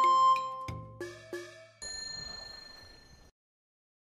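Outro logo jingle of chime dings: a held note fades out, two quick strikes ring about a second in, then a brighter bell-like tone rings and fades away, ending well before the close.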